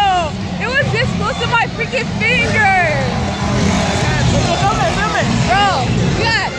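High-pitched voices crying out and exclaiming in quick, sharply rising and falling calls, several in a row, over a steady low rumble.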